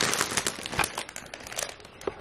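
Plastic wrapping of a bouquet of roses crinkling as it is handled: dense crackles that grow fainter toward the end.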